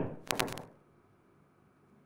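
A sharp click right at the start, then a quick run of three or four more clicks about half a second in, followed by very quiet room tone.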